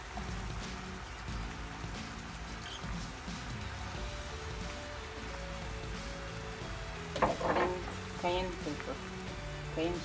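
Background music over a cream sauce simmering in a nonstick pan, its bubbles popping in a steady pattering crackle. A short louder burst comes about seven seconds in.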